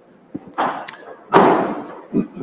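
Microphone handling noise: a short click, then two noisy bumps, the second and louder one about a second and a half in.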